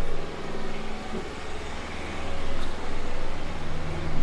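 Road traffic on a city street, with a steady low engine hum under a general traffic noise.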